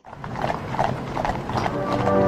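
Horses' hooves clip-clopping on a gravel parade ground as a mounted cavalry escort and a horse-drawn carriage approach.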